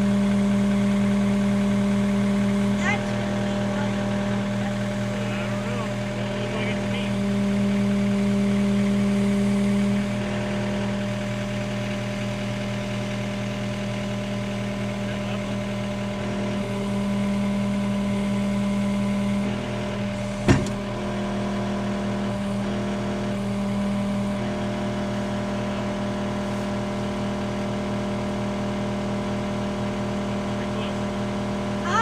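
John Deere 316GR skid steer's diesel engine running steadily close by, its sound swelling and easing a few times as the machine is worked. A single sharp clunk comes about two-thirds of the way through.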